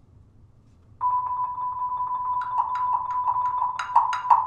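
Percussion ensemble with marimbas playing: after about a second of quiet, a single high note enters suddenly and is held, then from a little past halfway repeated mallet strikes on wooden bars join in, about three a second, growing louder near the end.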